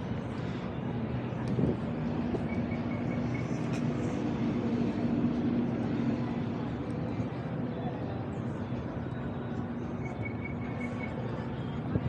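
Outdoor city street ambience: a steady wash of noise with faint distant voices. A low steady hum swells about a second and a half in and fades out by about eight seconds.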